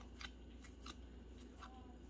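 Magic: The Gathering cards being slid apart and flipped through in the hands: a handful of faint, separate papery flicks.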